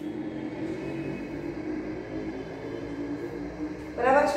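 A steady low background hum with faint held tones, no speech.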